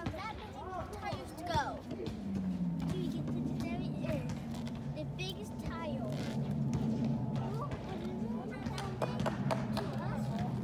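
Voices and music, over a steady low hum that settles in pitch about two seconds in.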